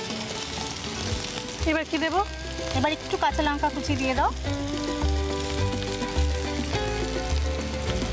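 Sliced onions sizzling as they fry in hot mustard oil, stirred in the pan with a wooden spatula. Background music with a stepping bass line plays over it.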